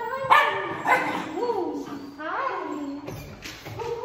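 A puppy yipping: a run of short, high, rising-and-falling barks, about two a second.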